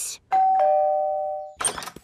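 Two-note ding-dong doorbell chime: a higher note, then a lower one, both ringing and fading away within about a second. A brief short noise follows near the end.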